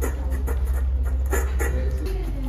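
A dog eating from a stainless steel bowl, chewing and lapping, with sharp clicks against the metal near the start and again about a second and a half in, over a steady low hum.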